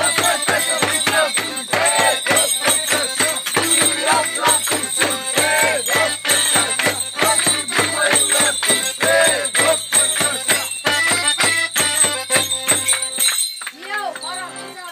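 Traditional Romanian New Year goat-troupe music: a drum beating a fast steady rhythm, about three beats a second, with bells jingling throughout and a melody over it. It all stops abruptly near the end, leaving only light ringing of bells.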